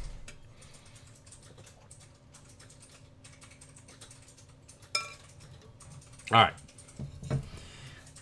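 Faint typing on a computer keyboard over a low steady hum, with one sharper click about five seconds in.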